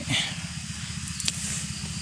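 Forest ambience: a steady low pulsing hum under a high steady hiss, with one short click a little past the middle.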